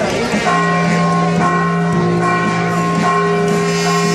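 Church bells ringing, their tones overlapping into a steady, sustained chord that sets in about half a second in.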